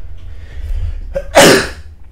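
A man sneezes once, loudly and sharply, about a second and a half in.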